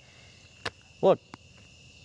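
Insects, crickets by the sound of it, trilling steadily in a high continuous tone, under a single spoken word about a second in.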